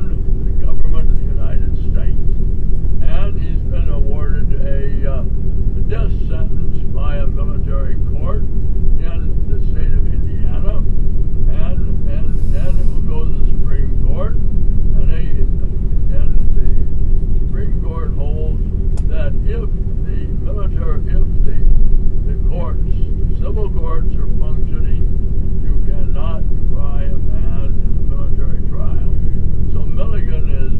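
Steady low rumble and hum of a moving vehicle, with indistinct voices talking over it throughout.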